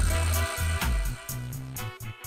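Upbeat background music with a steady drum beat and a bass line.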